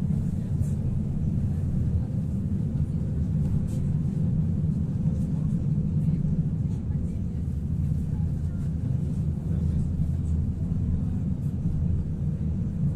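Pesa Foxtrot tram running at steady speed, heard from inside the car: a continuous low rumble of wheels on rails and the running gear, with a few faint light ticks.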